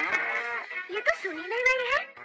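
A cartoon animal's wordless, drawn-out vocal calls, gliding up and down in pitch, over light background music.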